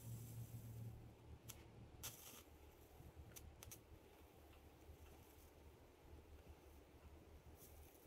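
Near silence: a faint steady low hum and a few faint clicks as a high-voltage fractal burner passes current through a cherry wood grip blank, burning a Lichtenberg pattern into it.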